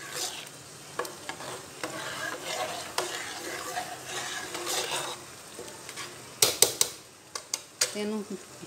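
Metal ladle stirring thick rice kheer in a metal pot: a soft scraping swish with occasional light clicks against the pot. Near the end come a few sharp metal knocks of the ladle on the pot, the loudest sounds here.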